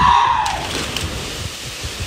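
A loud shout that falls in pitch as a group jumps off a bridge, then a rushing splash of several bodies hitting the water below, fading over the next second or so.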